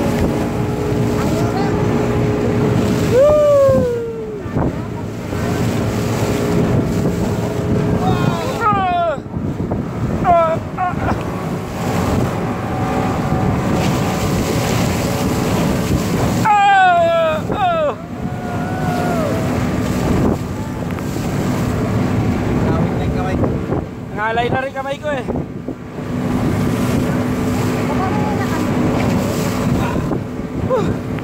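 Banana boat ride at speed: wind buffets the phone microphone over rushing water, with the towing speedboat's engine droning steadily underneath. Riders let out wavering cries four times, about three, ten, seventeen and twenty-five seconds in.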